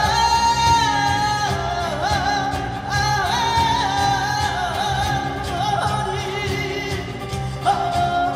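A woman singing flamenco-style: long held notes with wavering, ornamented pitch, over ensemble accompaniment in a seven-beat cycle.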